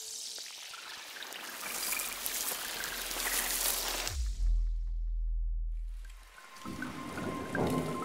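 Synthesized intro sound effects: a hissing swell builds for about four seconds, then a deep bass boom drops in with a quick downward sweep and fades over about two seconds. A second hissing swell follows, with a faint steady tone near the end.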